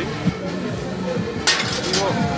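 Background music, then about one and a half seconds in a sharp crash with a brief ringing tail: a thrown ball smashing a crockery plate at a plate-smashing stall.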